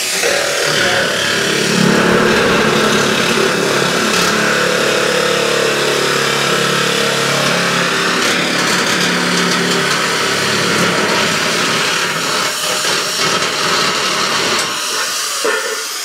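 Makita electric nibbling shears cutting through a coated steel metal roof tile sheet, the motor running steadily under load as the tool works along the sheet, stopping shortly before the end.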